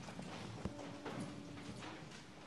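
A congregation getting to its feet: shuffling, rustling and scattered knocks of feet and pews, with one sharper knock about two-thirds of a second in.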